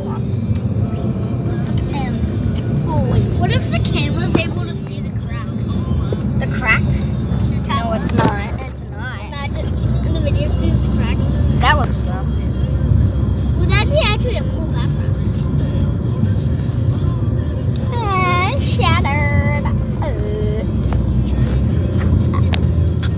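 Steady low rumble of a car's cabin, with children's high-pitched voices and squeals over it; the longest squealing glide comes near the end.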